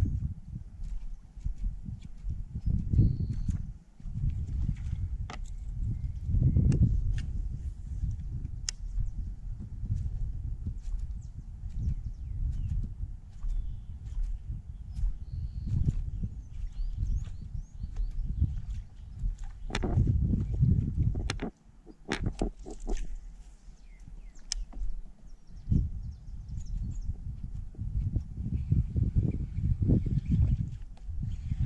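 Wind buffeting an action-camera microphone, a rumble that rises and falls in gusts. Scattered light clicks and knocks from handling the fishing rod, reel and kayak run through it, with a quick run of clicks about twenty seconds in.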